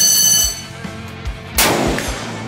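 A bright electronic ding sounds and fades at the start. A single shot from an AR-style rifle cracks about a second and a half in, over background music.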